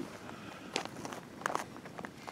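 Faint footsteps on gravelly dirt: soft scuffs with a few sharper clicks, the clearest about three-quarters of a second and a second and a half in.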